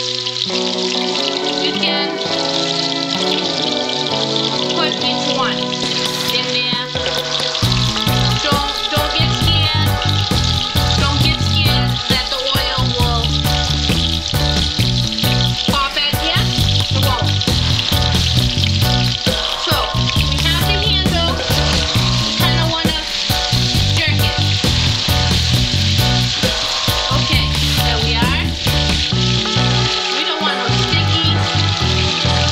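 Raw meatballs sizzling as they fry in hot sunflower oil in a skillet, with background music over it that takes on a steady beat about seven seconds in.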